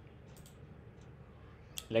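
A few faint computer mouse clicks over quiet room tone, the sharpest one near the end.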